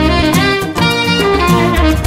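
A small acoustic jazz band playing an instrumental passage with no singing: saxophone to the fore over upright bass notes, piano and drum strokes.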